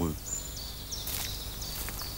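Outdoor ambience of birds calling: a few thin, high whistled notes over a soft background hiss.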